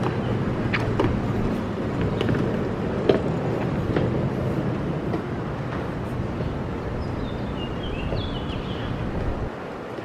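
City street ambience: a steady low rumble of traffic with scattered clicks and knocks, one a little louder about three seconds in, and a few short high chirps near the end.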